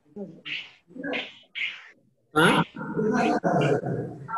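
Dry-erase marker squeaking on a whiteboard in a few short strokes while characters are written, followed about halfway through by a man's loud spoken "haan?".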